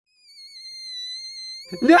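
A thin, high whistle-like tone from the cartoon soundtrack, slightly wavering, swelling in and then breaking off as Anna freezes solid. Near the end a voice cries out "No!"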